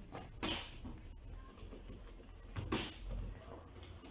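Two short hissing bursts about two seconds apart, made by a kickboxer stepping in and kicking on a training mat, over a faint low room rumble.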